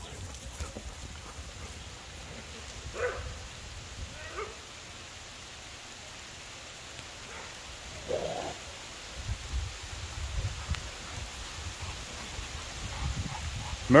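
A few faint, short dog barks from a pack at play, the clearest about eight seconds in, over steady outdoor background noise. Low rumbling on the microphone runs through the second half.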